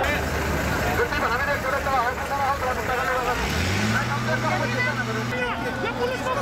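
Crowd of many voices shouting over one another, with a vehicle engine running underneath that revs up about three and a half seconds in and holds at the higher speed.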